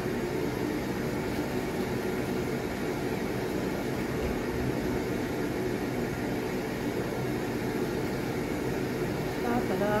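Steady background room noise: a low, even hum with hiss that holds at one level throughout, with no distinct knocks or clatter from the food being handled.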